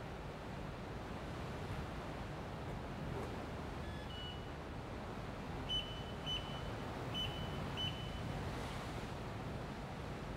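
A steady background hum with short, high-pitched beeps: one about four seconds in, then four more over the next few seconds, roughly half a second to a second apart.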